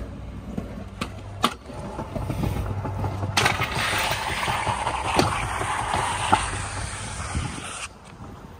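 Stunt scooter wheels rolling on pavement with a couple of sharp clicks, then the scooter grinding along a concrete ledge: a loud, steady scrape of about four and a half seconds with a few knocks in it, which cuts off suddenly near the end.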